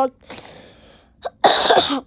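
A person coughing about one and a half seconds in: one loud, short, rough burst after a soft hiss.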